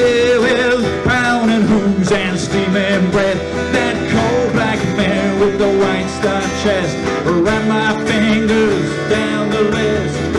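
Acoustic folk band playing: strummed acoustic guitars and a mandolin-family instrument over a cajon beat, a steady, unbroken instrumental passage.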